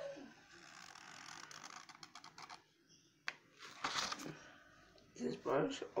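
Faint rapid crackling clicks for about two seconds, then a single sharp click and a short rustle, as small objects are handled. A brief bit of voice near the end.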